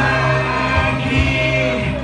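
A man singing live into a handheld microphone, amplified through a PA over backing music, holding long notes.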